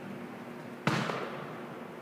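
A single heavy impact about a second in, sharp at the start and dying away quickly: a thrown shot landing on the indoor track surface.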